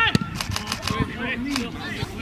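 Footballers shouting to each other on the pitch during an attack. A quick run of sharp clicks sounds about half a second in.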